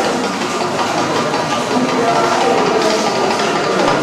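Indistinct chatter of many people talking at once in a room, a steady murmur with no single voice standing out.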